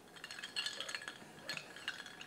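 Ice cubes clinking against the sides of a stemmed glass of brandy as the glass is handled: a series of light, sharp clinks, a few together in the first half-second and more about one and a half seconds in.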